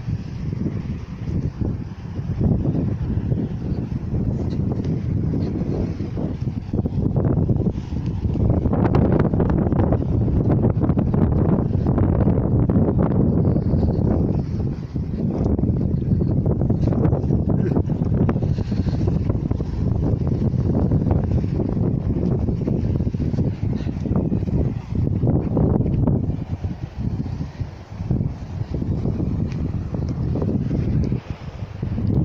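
Wind buffeting the phone's microphone: a loud, low rumbling that rises and falls in gusts.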